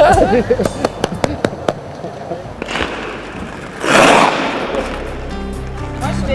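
Laughter trailing off, then a few sharp clicks and a short, loud rush of noise about four seconds in; background music comes in near the end.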